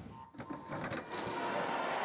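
Swimming-arena crowd noise rising as swimmers dive in at the start of a race, with a faint steady tone that is likely the start signal.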